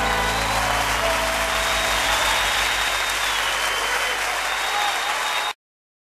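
Audience applauding at the end of a song, with the band's last notes fading at the start; the sound cuts off abruptly about five and a half seconds in.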